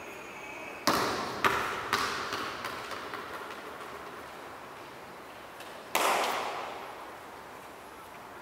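A football bouncing on a hard tiled floor: a hard first bounce about a second in, then quicker, weaker bounces dying away, and one more thud about six seconds in. Each impact echoes through the large tiled hall.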